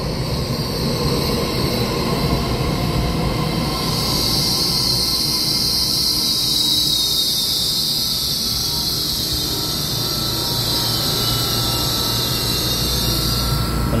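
EMU3000 electric multiple unit running slowly along the platform with a steady low rumble. A high-pitched squeal from the train sets in about four seconds in and cuts off just before the end.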